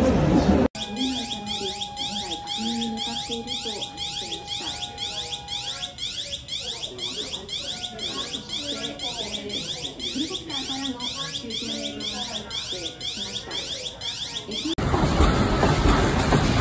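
Electronic warning alarm repeating a sweeping tone about twice a second, sounding as an earthquake and tsunami alert. A steady tone runs under it for the first few seconds, and faint voices lie beneath. It starts abruptly about a second in and stops about a second before the end.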